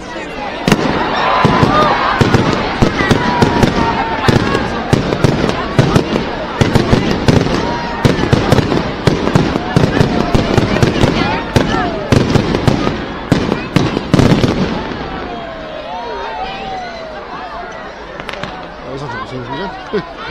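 Fireworks display going off overhead: rapid bangs and crackles that start about a second in and stop about fifteen seconds in, over the chatter of a large crowd.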